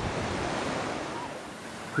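Black Sea surf breaking on the shore under strong wind, a steady rushing noise that slowly fades.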